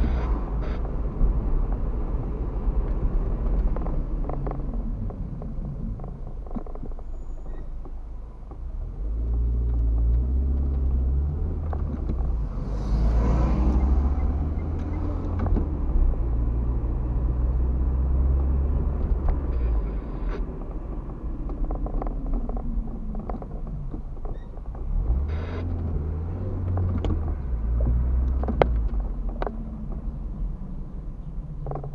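Car interior heard through a dashcam while driving: a continuous low engine and road rumble that swells and eases in several stretches as the car speeds up and slows. A brief hissing swell rises and fades around the middle.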